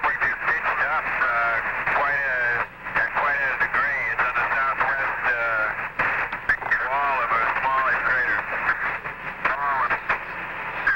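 Voices over a narrow, tinny radio link, with clicks and crackle of static: Apollo 11 air-to-ground voice transmissions.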